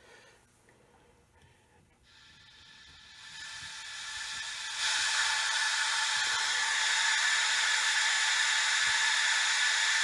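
Radio static hiss from an LS-671/VRC loudspeaker fed by a PRC-77 manpack radio. It rises as the volume is turned up from about two seconds in, then holds steady from about five seconds in.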